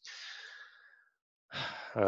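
A man's audible breath out, like a sigh, about a second long and fading away, followed near the end by another breath as his speech starts again.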